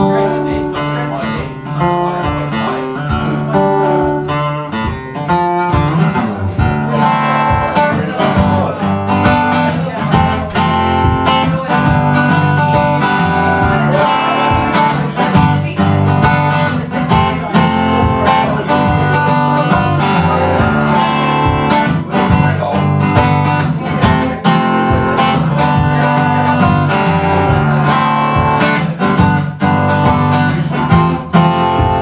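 Solo acoustic guitar playing an instrumental blues passage before the vocals, with rhythmic strummed and picked chords. It gets fuller and louder about six seconds in.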